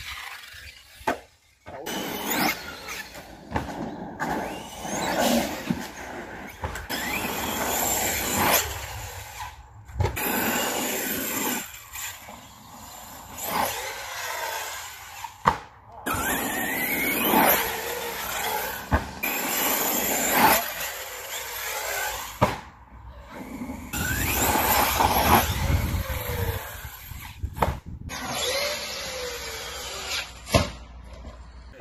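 Electric RC cars' motors whining, revving up and down in rising and falling glides as the cars run and jump, broken into short clips with abrupt cuts between them.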